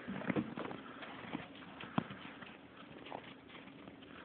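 Footsteps in snow: a few irregular steps, with a sharper knock about two seconds in.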